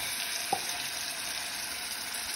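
Chicken pieces and chopped onion sizzling in hot oil in a pot as a spoon stirs them, with one light clink about a quarter of the way in.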